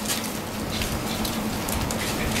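Bible pages being leafed through close to the microphone: a quick, irregular run of crisp paper rustles and flicks, over a steady low hum.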